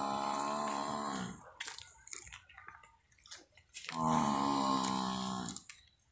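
Water buffalo mooing: two long, steady calls. The first ends about a second in, and the second starts near four seconds and lasts about two seconds.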